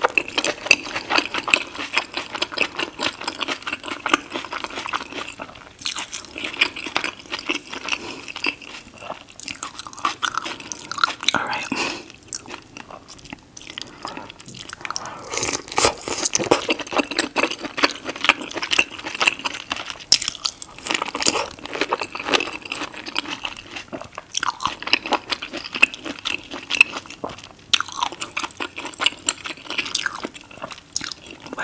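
Close-miked chewing and biting of sauce-coated seafood boil food: a dense run of small mouth clicks and smacks, with a couple of brief lulls.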